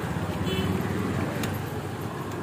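Street traffic: motor vehicles running close by, a steady low hum, with a single sharp knock about one and a half seconds in.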